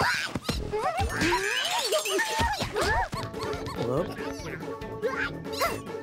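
Wordless, high-pitched cartoon voices, a run of short babbling calls that swoop up and down in pitch, over background music.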